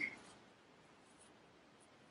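Near silence with the faint rustle of yarn being worked on a crochet hook, just after the end of a spoken word at the very start.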